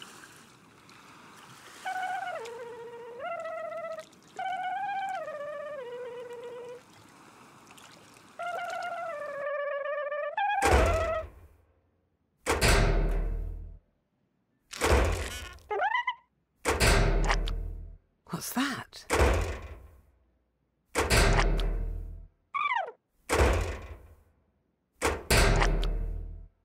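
A short melodic phrase of held notes stepping up and down, then, from about ten seconds in, a run of heavy cartoon thuds every one to two seconds, each a deep boom that rings out, some with a falling tone.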